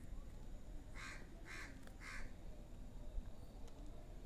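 Three short, harsh bird calls about half a second apart, faint over quiet room tone.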